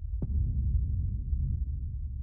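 Deep, low rumble of film-trailer sound design, throbbing unevenly like a slow pulse, with one short sharp click about a quarter second in.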